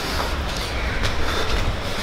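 Steady low rumble and hiss of vehicle noise, with no clear start or stop.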